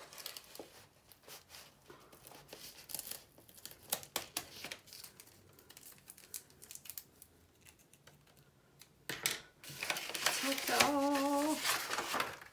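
Scissors snipping along the paper wrapping of a rolled parcel, with small clicks and rustles, then louder crinkling and rustling as the paper is pulled off, about nine seconds in.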